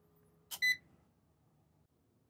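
A single click, then one short, high beep from the Xantrex Freedom HF inverter/charger as its AC input is cut and it switches over to invert mode.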